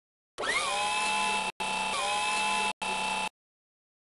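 Electric motor whirring sound effect for a small wheeled robot moving. It comes in three bursts, the last one short, each starting with a quick rising pitch that settles into a steady whir and cuts off abruptly.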